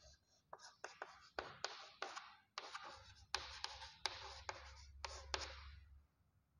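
Chalk writing on a chalkboard: a quick run of short scratching strokes and taps as a word is written out, stopping shortly before the end.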